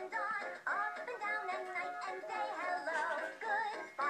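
Electronic toy playhouse playing a children's song with a synthesized singing voice through its small speaker.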